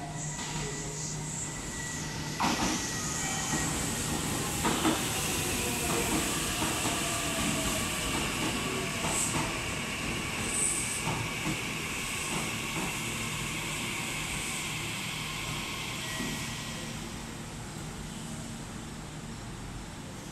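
Meitetsu 9500-series electric train arriving and braking to a stop. Wheels click over rail joints in the first few seconds, and the motor whine falls steadily in pitch as the train slows. A high hissing note runs through the braking and fades as the train comes to rest, after which it is quieter.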